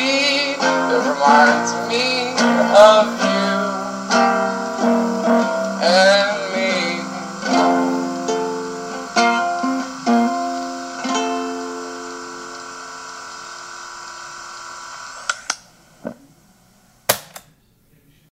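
Lo-fi acoustic guitar song with a voice singing; the singing stops about seven seconds in and the last plucked guitar notes ring out and fade away by about fifteen seconds. A few sharp clicks follow near the end.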